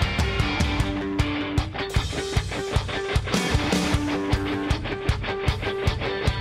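Rock band playing an instrumental passage with no vocals: an electric guitar repeats a short riff over a steady drum beat.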